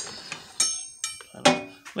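Long steel drill bits clinking against each other and the steel of a tool chest drawer, two sharp metallic clinks with brief ringing about half a second and a second in.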